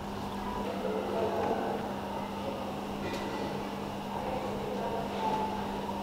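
Steady low background hum with a constant low tone, like a room's machine hum, and a faint tick about three seconds in.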